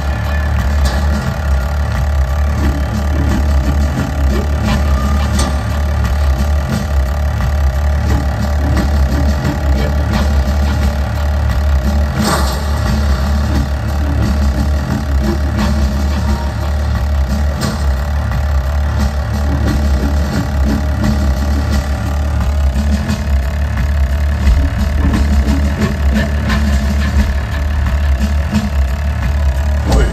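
Live rock band playing loudly through a stadium PA: a steady, heavy low drone with sustained tones layered above it.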